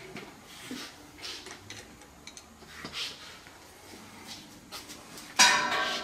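Hand-cranked wire rolling mill working a fine-silver bar: light clicks and ticks of the gears and rollers as it turns, then a loud metallic clank that rings briefly, about five and a half seconds in.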